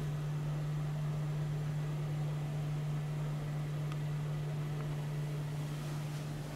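A steady low electrical or mechanical hum, unchanging in pitch, over a faint hiss of room noise.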